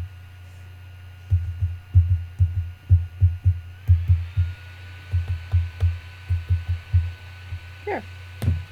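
Paintbrush pounced repeatedly onto die-cut paper leaves on a craft mat, dabbing on paint: a run of irregular dull low thumps, two or three a second, over a steady low hum.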